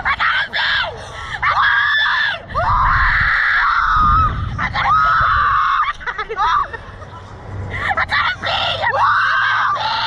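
Two young women screaming and laughing while riding a reverse-bungee slingshot ride: several long, high screams, which ease about six seconds in and rise again near the end.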